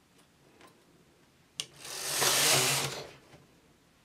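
Carriage of a domestic flatbed knitting machine pushed across the needle bed in one pass while knitting a short row of neckline shaping in partial-knitting mode. A click, then about a second of sliding noise that builds and fades.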